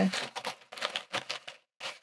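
Plasticky pencil case being handled and pushed into shape: a run of short crinkles and clicks, about five or six of them, the last near the end.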